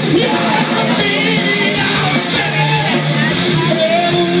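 Rock band playing live through a PA: electric guitars and drums, with a voice singing over them.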